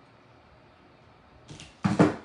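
A plastic hot glue gun is set down on a craft table: a light knock and then a loud thud near the end, after a quiet stretch.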